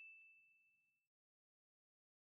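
Near silence, apart from the fading tail of a single ding chime, a clear high tone that dies away about a second in. The chime is the cue for the learner to repeat the sentence aloud.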